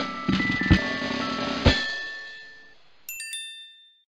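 Logo intro music: rhythmic low hits under bell-like ringing tones that fade away about two seconds in, followed by a short bright chime a little after three seconds.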